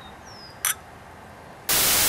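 Two stemmed glasses of beer clinking once in a toast, a short bright tap. Near the end a sudden loud burst of white-noise static hiss cuts in.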